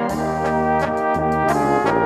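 Czech brass band music: an instrumental passage played on trumpets and trombones, with no singing.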